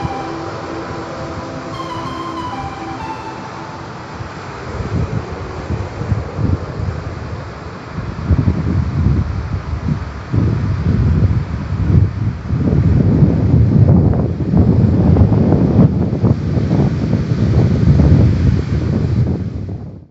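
Surf breaking on rocks, with wind buffeting the microphone in strong gusts that grow louder about eight seconds in; the sound cuts off suddenly at the end.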